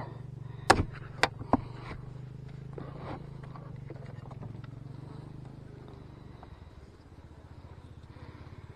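Wooden hive box knocking sharply three times in the first two seconds as it is pried up and tipped back with a hive tool, over a low steady hum of honey bees that fades near the end.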